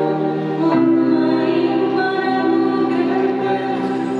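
A choir singing a slow liturgical hymn in long held notes, the pitch stepping up a little under a second in.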